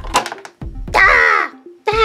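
A short clatter as a toy car's spring-loaded claw swings over and snaps down on a small figure, then about a second in a shrill play-acted scream that falls in pitch, the grabbed figure's cry, over light background music.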